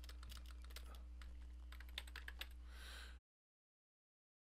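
Computer keyboard typing: a quick run of faint key clicks over a steady low electrical hum. A little after three seconds in the sound cuts out to dead silence.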